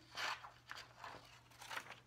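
Scissors snipping through a sheet of construction paper in short cuts made without moving the scissors up. One louder snip comes just after the start, then a few fainter snips and paper rustles.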